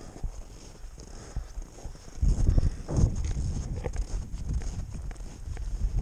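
Footsteps crunching through snow on a frozen lake, in a steady walking rhythm. From about two seconds in, a louder low rumble of wind buffets the microphone.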